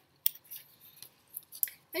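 A paper sticker sheet being bent and handled, giving a few short, crisp crackles.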